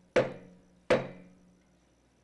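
Wooden gavel struck twice on the Senate rostrum, under a second apart, each sharp knock dying away with a short echo: the gavel calling the session to order.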